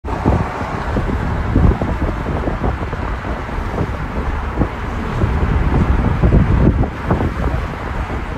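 Road noise inside a car moving at freeway speed: a steady low rumble with irregular buffeting thumps on the microphone.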